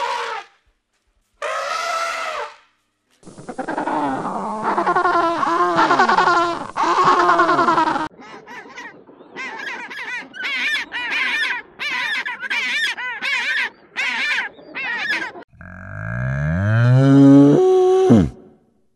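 Animal calls edited back to back. First come a few short calls and a five-second stretch of bending calls, then African penguins braying in a run of about a dozen short calls, roughly two a second, and near the end a Highland cow's long moo that climbs in pitch and grows loud.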